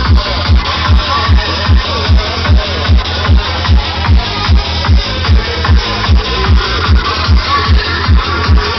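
Dark psytrance played loud through a party sound system: a steady kick drum at about two and a half beats a second, each kick a falling thump, with bass between the kicks and busy synth sounds above.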